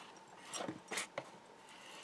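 Faint rubbing of a hand tool pressed along glued greyboard and card, with a few soft clicks, as the glued pieces are pressed down to stick.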